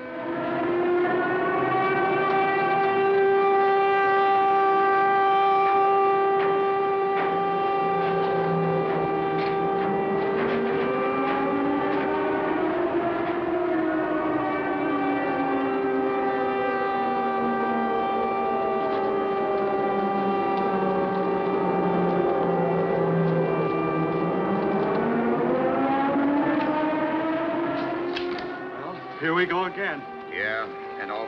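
Prison alarm siren sounding continuously: a steady high tone with a second wailing pitch that slowly falls and rises again, twice.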